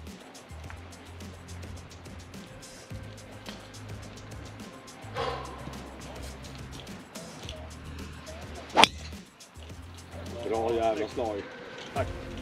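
Golf driver striking a ball off the tee: one sharp crack about nine seconds in, the loudest sound, over steady background music. A brief voice follows near the end.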